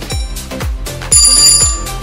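Electronic dance background music with a steady kick-drum beat. About a second in, a loud, bright ringing alarm sound effect sounds for under a second, signalling that the quiz timer has run out.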